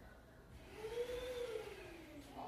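A motor's whine, swelling in about half a second in, rising and then falling in pitch, loudest about a second in and fading away at the end.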